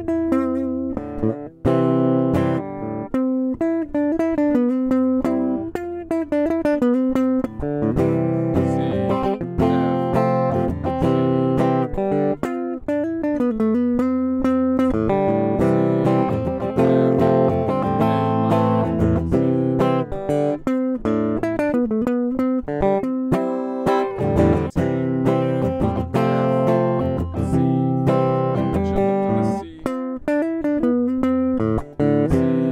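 Electric guitar played unaccompanied: chords and single notes picked and strummed in C major / A minor, moving between chord shapes up the neck and landing on C notes, in short phrases with brief gaps.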